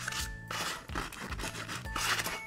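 Hand sanding: sandpaper on a block rubbed in repeated strokes against pine wood in and around drilled holes, smoothing the rough surface the drill left. Background music plays underneath.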